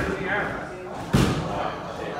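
One loud, sharp thump about a second in, over background talk in a gym.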